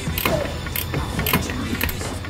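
A hand tool working a fastener loose while a power brake unit is being removed: sharp metallic clicks, about two a second.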